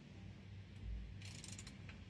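Freshly reassembled engine being turned over by hand to check that it moves freely without resistance: a soft thump about a second in, then a short rasping, clicking burst, quiet mechanical sounds.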